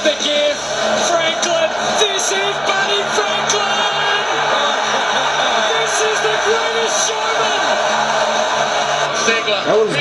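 Highlight-reel music playing over the steady noise of a stadium crowd, with a voice heard now and then.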